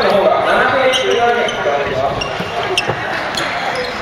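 A basketball bouncing on a hardwood gym floor during play, with players' voices calling out and a few short sneaker squeaks.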